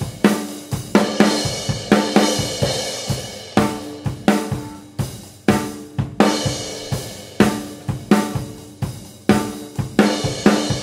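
Drum kit played in a steady beat: Yamaha Maple Custom Absolute snare and bass drum under Paiste 2002 Big Beat hi-hats and crash cymbals washing over the top, with sharp strikes two to three times a second.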